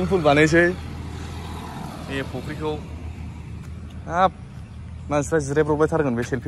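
A person's voice speaking in short phrases with pauses between them, over a steady low rumble.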